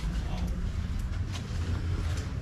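Footsteps on stone paving, about two a second, over a steady low rumble.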